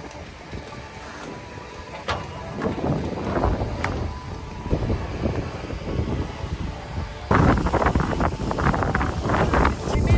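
Wind buffeting the microphone in uneven gusts, strengthening about two seconds in and jumping suddenly louder about seven seconds in.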